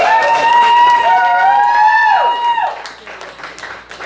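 A live rock band ends a song on long held notes that slide down in pitch and stop about two and a half seconds in, followed by audience clapping and cheering.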